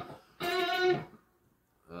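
Electric guitar through an amp playing a single held lead note, rich in overtones, beginning about half a second in and cut off after about half a second.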